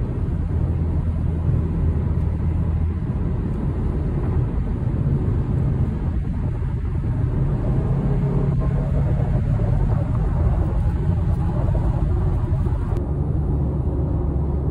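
Steady low drone of road and engine noise inside a 2014 Ford Mustang V6 cruising on the highway, heard from inside the cabin.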